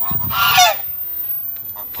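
A domestic goose honks once, a single call of a little over half a second that drops in pitch at the end.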